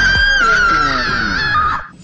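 A young woman's loud, high-pitched scream, held steady for nearly two seconds and cut off sharply, over background music.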